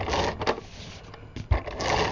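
Paper rustling and sliding on a tabletop as sheets and a plastic craft tool are handled, with a soft knock about one and a half seconds in.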